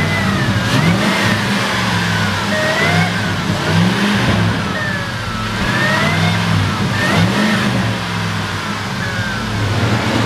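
Ford 5.4-litre V8 of a 2005 F-150 running and being revved up and down repeatedly, with a higher whine that rises and falls with the revs.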